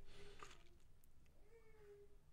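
Near silence: room tone, with a faint, slightly falling tone about one and a half seconds in.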